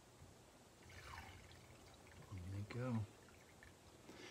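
Lemon-sugar syrup trickling and dripping from a strainer of lemon peels into the bowl below, faint. A brief low mumble from a man, with no clear words, about two and a half seconds in, is the loudest sound.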